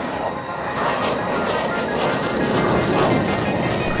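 Fighter jet engine noise, a broad roar that swells in and then holds steady.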